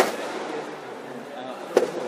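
Two sharp racket strikes on a shuttlecock in a badminton rally, just under two seconds apart.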